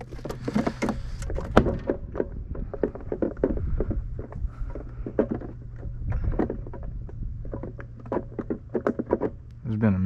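Irregular clicks, knocks and rattles of fishing gear and a cooler being handled in a small jon boat, busiest near the start and again near the end, over a steady low hum.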